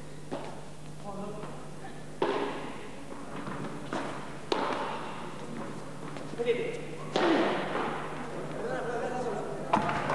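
Padel rally: the ball knocked back and forth with paddles and off the court walls, a few sharp knocks spaced unevenly a second or two apart, over crowd voices.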